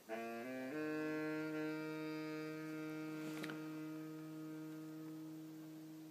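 Saxophone music: a few quick notes, then one long low note held for about five seconds, slowly fading.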